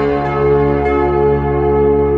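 A loud, deep bell-like tone that starts suddenly and rings on steadily with many overtones: the sting that accompanies the animated logo reveal.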